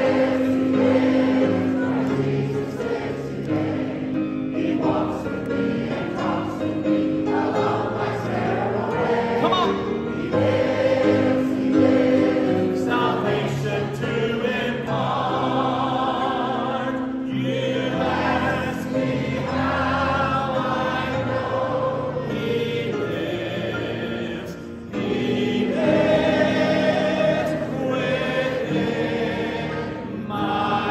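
Live gospel hymn singing: a male lead singer and a large crowd singing a chorus together over piano and band, picked up from among the audience in a reverberant hall. The music dips briefly near the end, then swells again.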